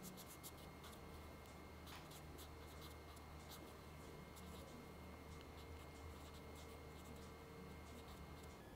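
Marker pen writing on paper: faint, quick scratchy strokes as an equation is written out, over a low steady hum.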